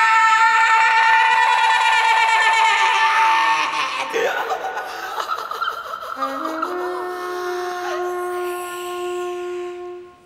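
Free-improvised performance for a woman's voice and jazz trumpet. For the first four seconds the voice vocalises in a rapid flutter over a long held note. From about six seconds in, the trumpet plays a slow line of steady low notes stepping upward.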